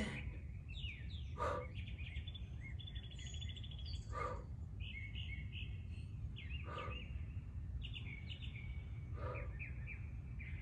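Songbirds chirping and trilling over a steady low rumble of outdoor noise. Four short, faint sounds from a person come at even intervals of about two and a half seconds.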